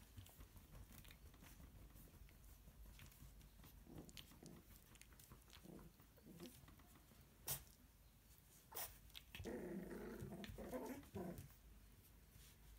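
Cocker spaniel puppies play-fighting, giving short, faint growls. The longest and loudest growl comes about nine and a half seconds in, and a couple of sharp taps come just before it.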